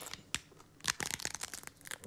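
People biting into and chewing crisp hard-shell corn tacos: a run of irregular, sharp crunches.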